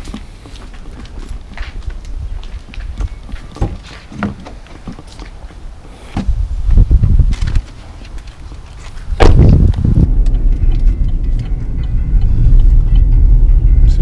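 Light footsteps and small knocks, then low rumbling from about six seconds in and a single heavy thump about nine seconds in. After the thump the steady low rumble of an SUV moving on the road fills the cabin.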